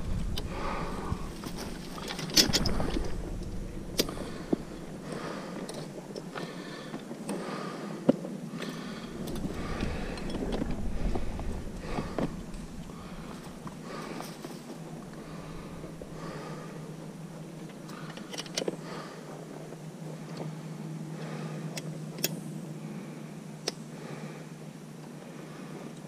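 Handling noise of steel body-grip traps and sticks being moved through dry leaves and shallow water: rustling with scattered sharp clicks and knocks, over a faint steady low murmur.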